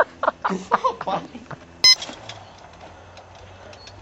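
A person laughing for the first second and a half, then a single sharp click with a brief high tone at about the middle, followed by a quiet low hum.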